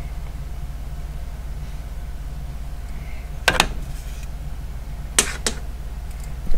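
Sharp clicks from a folding butane lighter being handled: one about halfway, then two close together near the end, over a steady low hum.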